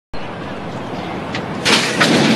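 Steady background noise of the racecourse, then about one and a half seconds in a loud sudden clash as the metal starting stalls spring open for the start of a horse race.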